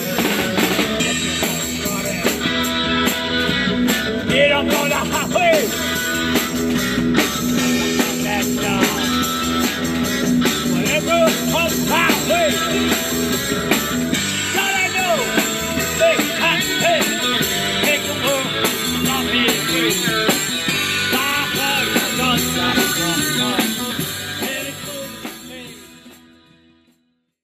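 Rock music with a drum kit and guitar, fading out over the last couple of seconds.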